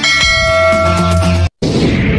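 Intro sound effect: a bell-like chime rings with several steady tones for about a second and a half and is cut off abruptly. After a brief gap, a loud noisy whoosh follows.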